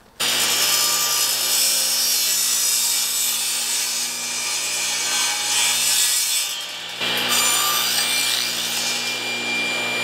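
Table saw running and cutting wood, its standard blade nibbling out the waste between the first dado cuts in pass after pass, since no dado stack is used. The sound is steady, with a short break about seven seconds in.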